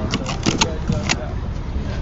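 A quick run of sharp clicks and rattles over a steady low hum, stopping a little past halfway, with faint voices underneath.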